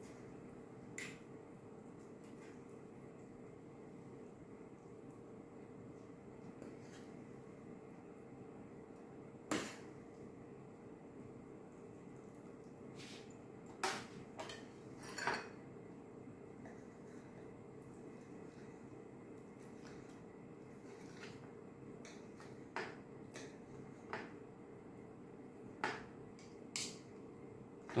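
Faint, scattered clinks and scrapes of a metal serving spoon and fork against a metal baking tray and a china plate while stuffed eggplant is served, over a low steady room hum.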